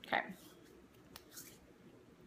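Faint handling sounds of small cosmetic items after a short spoken word: a single soft click a little past one second in, then a brief soft rustle.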